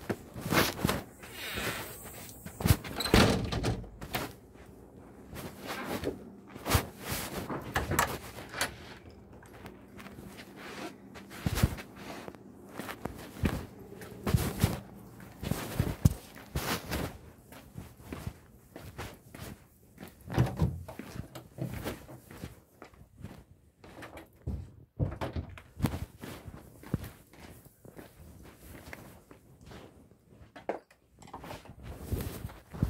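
Handling noise from a camera carried in a coat pocket: fabric rubbing over the microphone with irregular knocks and thumps as the wearer moves.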